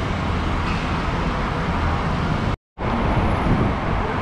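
Steady rushing background noise with a deep rumble, broken about two and a half seconds in by a brief gap of total silence where the recording is cut.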